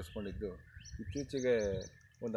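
A man talking, with small birds chirping behind him: a few short, high chirps around the middle.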